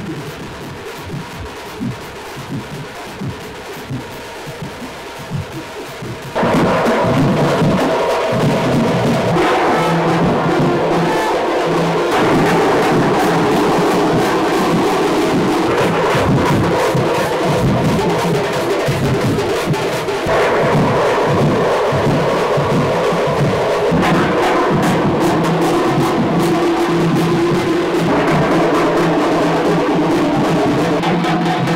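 A street band of large double-headed drums beaten with sticks, pounding a fast, dense rhythm. About six seconds in, it jumps much louder, with sustained pitched tones over the drumming.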